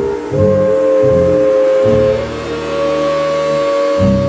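Flute holding long notes over upright bass in a live jazz trio: one long flute note, then a slightly higher one about two seconds in, while the bass plays a line of low plucked notes beneath.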